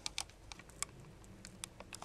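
A handful of light, sharp clicks and taps, irregularly spaced, a few close together at the start and again near the end.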